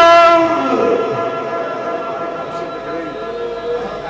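A male Quran reciter holding one long melodic note at the end of a verse, steady in pitch and slowly fading away near the end.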